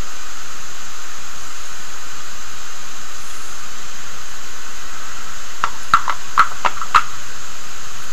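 A loud, steady hiss, with a few light clicks about six to seven seconds in.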